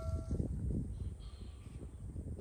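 Chime of an on-screen subscribe-bell animation ringing out and stopping about half a second in, over a low, steady rumble of outdoor background noise.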